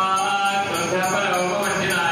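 Several male voices chanting Vedic Sanskrit mantras together in a sustained, melodic recitation.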